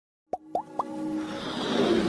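Opening sting of an animated logo intro: three quick pops, each sliding up in pitch, then a rising whoosh that swells into electronic intro music.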